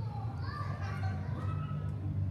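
Children's voices in the background, rising and falling in pitch, over a steady low hum.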